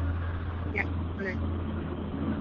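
A steady low hum under a pause in speech, a little louder in the first second, with a soft spoken "ya" about a second in.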